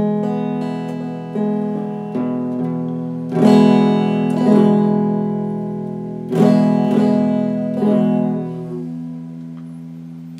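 Electric guitar played with a pick: a slow series of picked notes and chords, each left to ring and fade, with two louder strummed chords about three and a half and six and a half seconds in.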